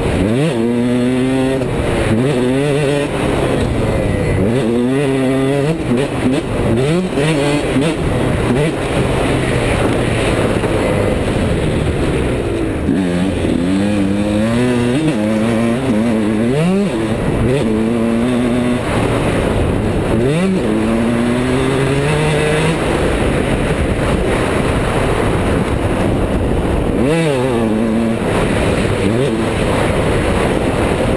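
Dirt bike engine being ridden hard, revving up and dropping back again and again as the throttle is worked and gears change, the pitch climbing and falling every second or two.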